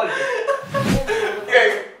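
A man chuckling and laughing, with some talk.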